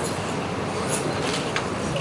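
Steady background noise of a busy room, with faint scattered knocks and rustles as people move about and settle into chairs.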